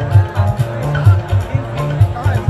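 Live qawwali accompaniment: harmonium chords over a fast, steady hand-drum beat, played between the sung lines.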